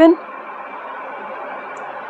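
A woman's voice trails off right at the start, followed by a steady background hiss with a faint hum.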